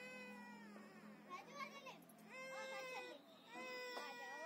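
Faint, high-pitched, drawn-out vocal calls, each held for about a second with a slight rise and fall in pitch: one trails off at the start, then two more follow in the second half.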